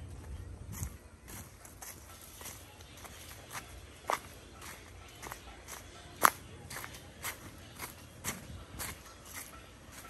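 Footsteps crunching on dry fallen leaves: irregular short crackles, one or two a second, with one louder crunch about six seconds in.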